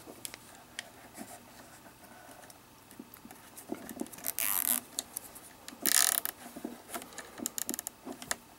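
Fingers handling a plastic cable tie and wire harness: scattered small clicks, with two short rasping bursts about four and six seconds in and a quick run of clicks near the end.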